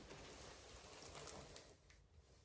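Faint rustle and crinkle of a diamond painting canvas and its plastic cover film being handled, dying away near the end.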